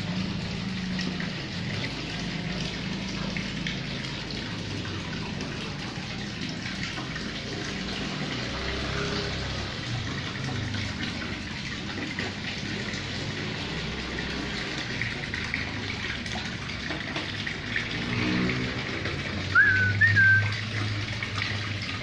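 Steady splashing water noise, with a short rising whistle twice near the end.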